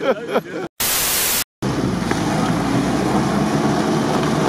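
A loud burst of even static hiss lasting about half a second, cut off by brief dropouts on both sides, about a second in. After it, an off-road vehicle's engine runs steadily.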